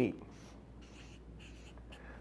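Felt-tip marker writing on a paper flip-chart pad: several short, soft strokes.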